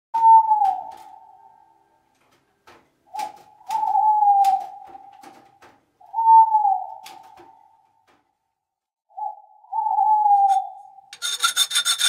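A creaking squeak with a slightly falling pitch, sounding four times at roughly three-second intervals and mixed with light clicks. A quick rattle of clicks with a ringing edge follows near the end.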